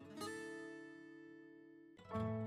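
Background music: a single acoustic guitar chord strummed just after the start, ringing and slowly fading.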